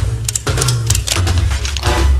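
Rock music with a steady bass line and sharp drum hits.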